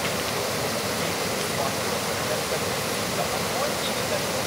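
Small waterfall pouring over rocks into a river: a steady, even rush of water.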